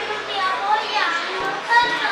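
Children's voices in the background, high-pitched chatter and calling in a large indoor space, loudest near the end.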